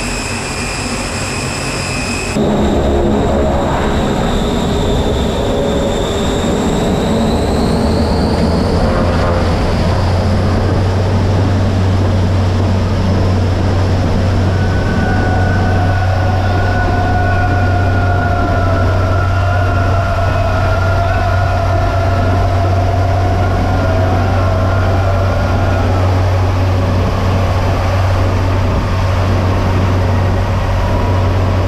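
Aircraft engines running, heard from inside the cabin: a steady low drone, with a higher whine that rises in pitch about seven to nine seconds in.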